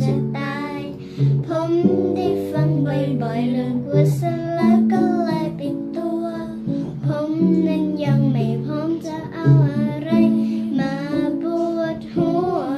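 A young girl singing a melody over a guitar accompaniment of held chords.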